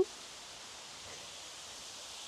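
Steady outdoor background hiss with no distinct sounds in it.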